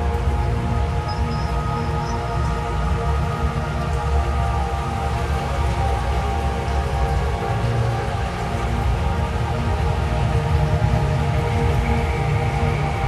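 Dark ambient drone music: many layered tones held steadily over a deep, dark low drone, with an even hiss underneath.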